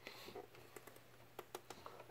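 Near silence: a faint low hum with a few scattered soft clicks.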